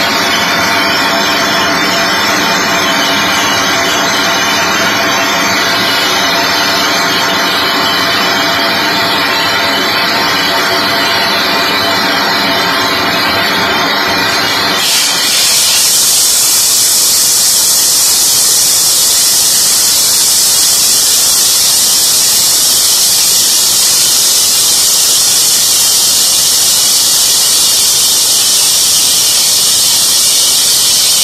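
Steam and hot water blasting steadily from the blowdown valve at the base of a steam generator, flushing out the boiler. About halfway through, the hiss jumps to a brighter, louder rush.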